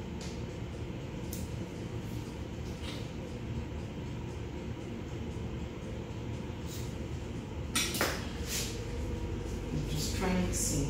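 Light kitchen handling over a steady low hum: a pastry wheel trimming puff pastry on a silicone mat, a few faint clicks, and one louder clatter about eight seconds in.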